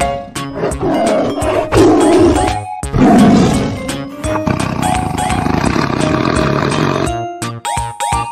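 A tiger roaring, with loud roars about two and three seconds in, over cheerful background music.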